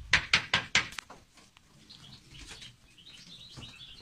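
A pigeon loft: a quick run of sharp clatters in the first second, then faint bird chirping.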